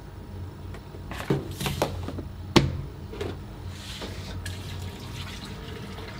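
Plastic tub and plastic jug clattering and knocking as pollen is tipped and scraped from the tub into the jug, with a few short knocks, the loudest about two and a half seconds in.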